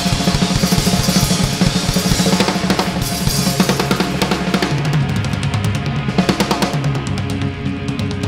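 Live rock band playing, led by a drum kit pounding bass drum, snare and cymbals over sustained electric guitar. The drumming turns to rapid, evenly spaced strokes in the second half.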